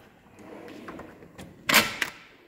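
A steel tool chest drawer sliding shut on its runners, ending in one short, loud knock as it closes, near the end.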